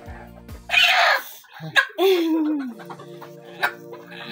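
A hen squawks loudly about a second in as a needle goes into its thigh muscle, a distress cry at the injection, and a louder cry falling in pitch follows about two seconds in. Background music with steady held tones plays underneath.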